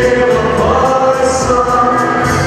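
Male vocal trio singing a pop song in harmony through a stage PA, holding long notes over backing music.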